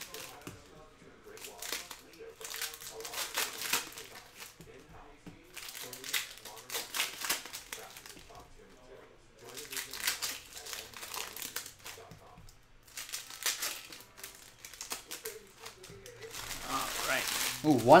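Foil trading-card pack wrappers being crinkled and torn open by hand, in several separate bursts a few seconds apart.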